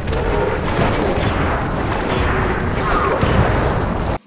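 Sound effects of an Ultraman giant-monster fight scene: a dense, continuous rumble with booms of explosions and crashes.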